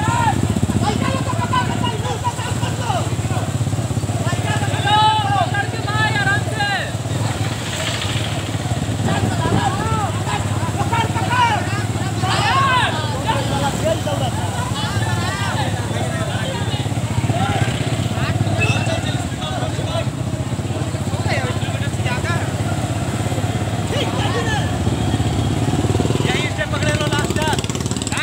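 Steady low rumble of a running vehicle engine, likely a motorcycle, with people's voices calling over it.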